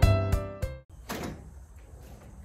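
Piano background music with regular note strikes that cuts off abruptly just under a second in, followed by a door being opened.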